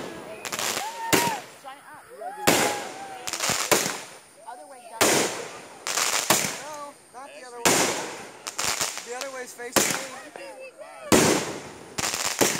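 Aerial fireworks bursting overhead in a string of sharp bangs, about one every second or so, with crackling and popping of the stars between the bangs.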